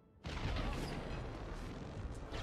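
A sudden heavy rumble with a hiss over it, a sound effect in the animated episode's soundtrack, cutting in about a quarter of a second in and running on steadily.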